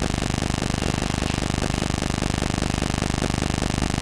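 A steady machine-like hum with a fast, even pulse, running without change.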